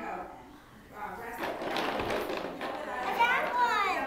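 Young children's voices while playing, without clear words, ending in high-pitched falling vocal sounds in the last second.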